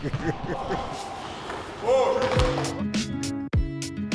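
Basketball being played in a gym hall, with ball bounces and court noise. About halfway through, music starts, with a deep thump a little over once a second under held notes.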